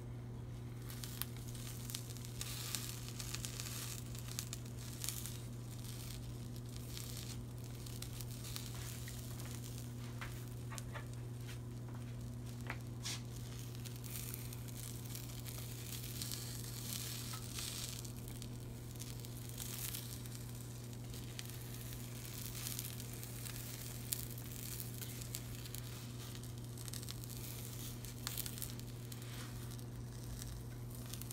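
Omelet sizzling quietly in a nonstick frying pan on low heat, with occasional light clicks and scrapes from a silicone spatula and fork as it is rolled. A steady low hum runs underneath.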